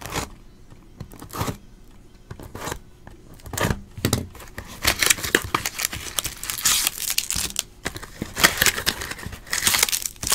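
The cardboard top of a Topps Museum Collection hobby box being pulled and torn open by hand. A few separate handling knocks come first, then a dense run of cardboard tearing and crinkling from about five seconds in.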